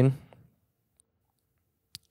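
The tail of a man's spoken word, then a pause of near silence with a faint tick about a second in and a short click just before he speaks again.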